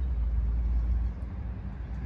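Steady low background rumble under a faint hiss, with no distinct events.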